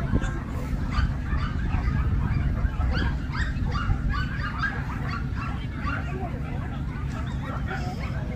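Several dogs barking in short, irregular barks, over a steady low rumble.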